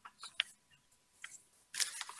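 A quiet pause holding a few faint short clicks, two in quick succession near the start and one a little past the middle, before speech resumes near the end.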